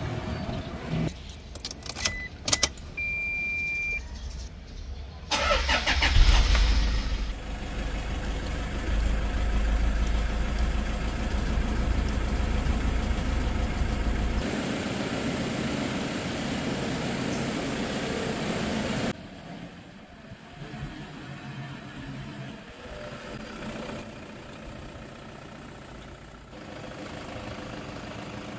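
A 2015 Toyota Fortuner G's 2.5-litre D-4D turbo diesel is started: a few clicks and a short beep, then it cranks, catches at the first try about five seconds in and settles into a low idle. From about 19 s the idle is quieter and more distant, running steadily with no misfire.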